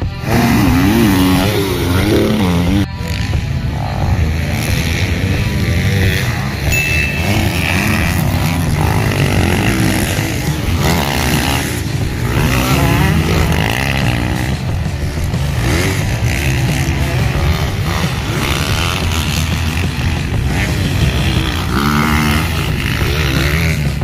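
Several dirt bike engines revving up and down as the bikes ride and jump around a motocross track, with music playing along.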